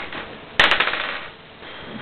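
A twenty-sided die rolled onto a table for an ability check, clattering in a few quick clicks about half a second in and then settling.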